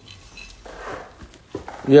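A man's voice starting to speak near the end, after a stretch of low background with a few faint clicks and a soft rush of noise.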